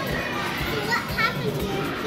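Steady background hubbub of many children playing and calling out, with faint scattered children's voices.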